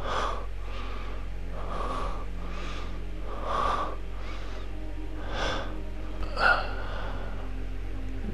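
A man's labored, gasping breaths, about one a second, like those of a wounded man in pain, over a steady low hum.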